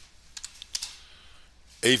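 Computer keyboard keystrokes: a quick run of several soft clicks in the first second, entering a ticker symbol into charting software.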